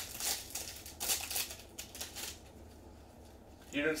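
Foil wrapper of a Bowman baseball card pack crinkling and tearing as gloved hands peel it open. It comes as crisp rustles for about two seconds, then fades to faint handling of the cards.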